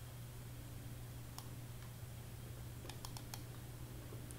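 Faint clicks of a computer mouse: one about a third of the way in, then a quick run of about four near the end, over a steady low hum.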